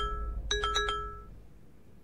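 A short bell-like chime of bright notes: the tail of one phrase, then the same run again about half a second in, dying away after about a second.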